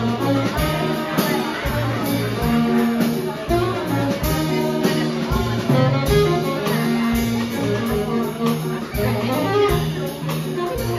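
A small jazz combo playing live: saxophones and trumpet over a drum kit with cymbals keeping time, and a guitar and a walking bass line underneath.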